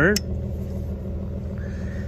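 Toyota V6 pickup engine idling, a steady low hum. A single short click just after the start.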